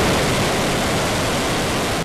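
Ballistic missile's rocket motor at liftoff: a loud, steady rushing noise without any pitch, which cuts off suddenly at the end.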